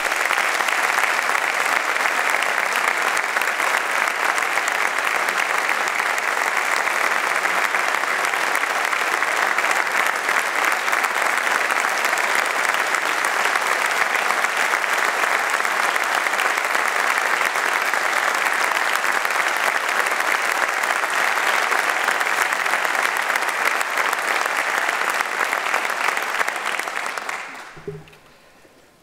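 Audience applauding steadily for a long stretch, dying away just before the end.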